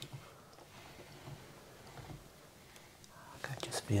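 Quiet room tone with a faint click at the start, then soft speech begins near the end.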